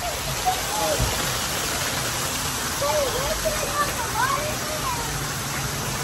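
Water pouring steadily from an artificial rock waterfall into a stone basin, an even splashing hiss.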